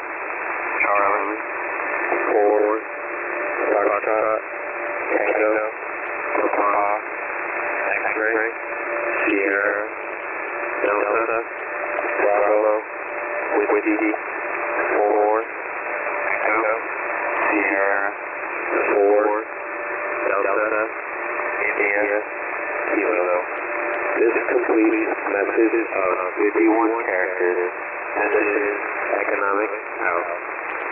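A voice received over single-sideband shortwave radio on the HFGCS 11175 kHz channel, heard in a narrow, telephone-like band over steady static. It reads short words one at a time, about every second and a half to two seconds, in the manner of an Emergency Action Message being read out in the phonetic alphabet.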